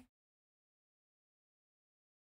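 Silence: the sound track is cut to digital silence.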